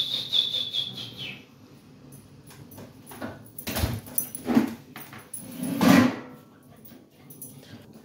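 Dog whining with a high, steady note for about a second at the start, then giving a few short barks in the second half.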